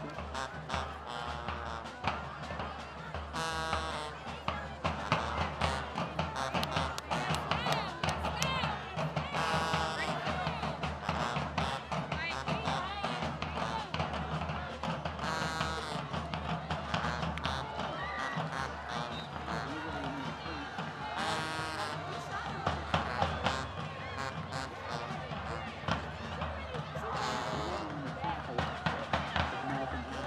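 Marching band playing in the stands, dense drum hits over low brass, with voices mixed in.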